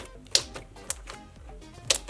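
Glue slime being poked and squeezed by fingers, giving sharp clicking pops. The loudest pop is about a third of a second in and another comes near the end, over soft background music.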